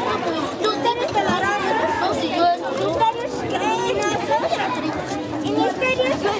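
Chatter: several children's voices talking at once, none clearly heard above the others.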